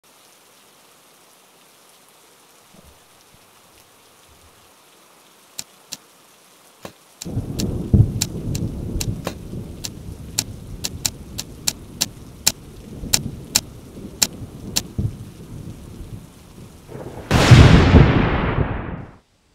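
Rain and low rolling thunder, with laptop keys clicking at an uneven pace over them. A loud thunderclap comes near the end.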